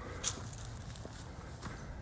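A hiker's footsteps on a dirt trail covered in dry leaf litter: a few short, soft steps over a low steady rumble.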